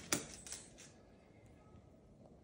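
A few sharp clicks or taps in the first half-second, the first the loudest, then quiet room tone.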